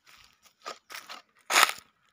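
Footsteps crunching on dry fallen leaves and dry earth, four short crunches about half a second apart, the loudest one about one and a half seconds in.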